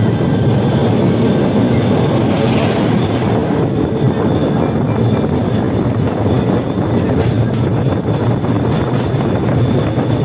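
Motorised bamboo train (norry) running along the railway track: a steady, loud rumble of its engine and its wheels on the rails.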